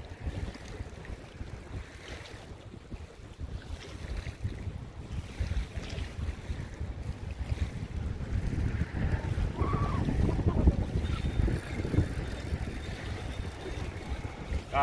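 Wind buffeting the microphone in uneven gusts, strongest around the middle, over the faint wash of bay water against the shore.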